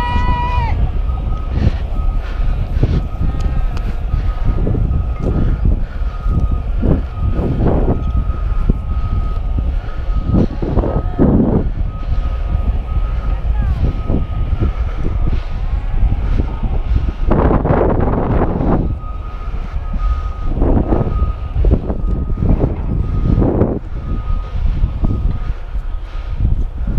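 A heavy-equipment backup alarm beeping, a single high tone repeated steadily, over a heavy low rumble of wind and walking on a helmet-mounted camera.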